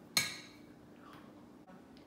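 A single sharp click with a short ringing tail about a fifth of a second in, then quiet room tone with a faint steady hum.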